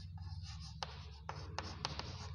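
Chalk writing on a blackboard: faint scratching with several light taps of the chalk as a word is written.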